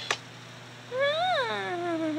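A short click at the start, then, about a second in, one long drawn-out vocal call that rises briefly and then slides down in pitch.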